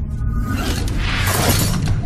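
Movie sound effect of a rushing, crashing blast of force that swells from about half a second in and dies away near the end, over a low, rumbling film score.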